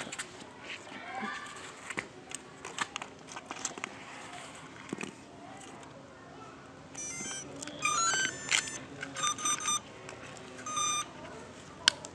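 Electronic speed controllers of a homemade quadcopter beeping through its brushless motors as the LiPo battery is connected: a run of short rising tones, then several repeated beeps, from about seven seconds in to about eleven. Before that there are small clicks of wiring being handled, and there is a sharp click near the end.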